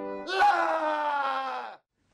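A loud groaning tone with many overtones, sliding slowly down in pitch for about a second and a half, then cutting off abruptly.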